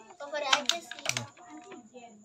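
Low talk with a few sharp crackles of plastic food wrapping being handled in the first second or so.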